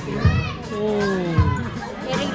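A voice singing over music with a steady low beat, about one thump a second, with other voices and chatter around it.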